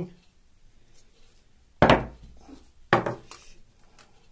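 Two sharp knocks about a second apart, the first the loudest, from the white plastic pipe airlift frame and tape measure being handled and shifted on a table.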